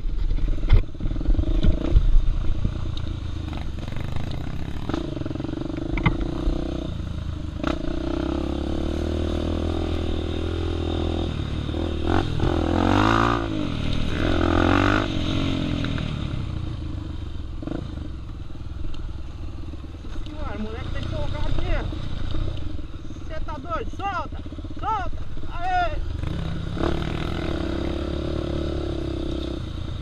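A trail motorcycle's single-cylinder engine runs continuously, picked up by a helmet camera. There are sharp knocks and rattles from the bumpy trail in the first couple of seconds, and the engine revs up and down around the middle.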